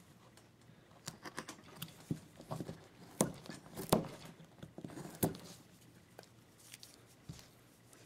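Hand chisel cutting into a basswood block: a series of short, irregular cuts and scrapes as the blade shears the wood for a stop cut, the loudest about three to five seconds in.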